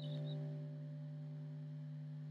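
A steady low hum from an amplified Rickenbacker hollow-body electric guitar, held at one pitch while the strings are not being played, with a faint high ping right at the start.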